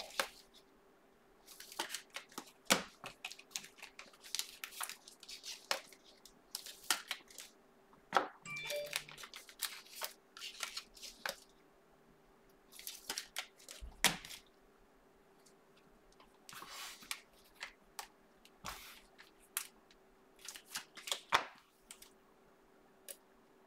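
Trading cards and clear plastic sleeves or holders being handled: short spells of crinkling, scraping and tapping with quiet gaps between them.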